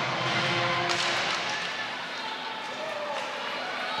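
Ice hockey arena sound during live play: a steady murmur of crowd and voices, with skates on the ice and a couple of sharp stick-and-puck clicks near the start and about a second in.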